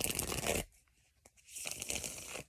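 Tarot cards being shuffled by hand: two short papery riffling bursts, one at the start and one from about a second and a half in.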